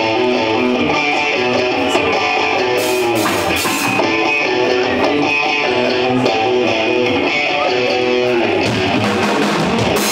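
Electric guitars playing the opening riff of a rock song live, loud and steady.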